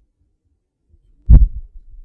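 A single dull, low thump a little over a second in, followed by two faint bumps.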